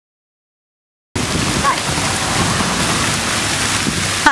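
Silence, then about a second in a fountain's water jets splashing into the basin begin at once: a loud, steady, even spray.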